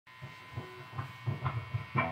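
Electric guitar amplifier humming and buzzing at low level, with several soft low thumps and a louder one at the very end.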